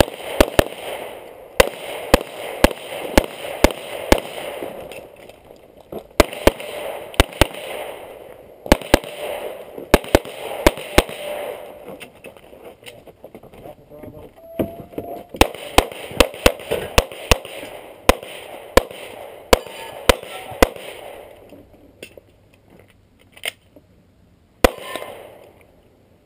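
Pistol fired in fast pairs and short strings of shots, with breaks of a second or two between the groups while the shooter moves to new targets. The last shot comes about 25 s in.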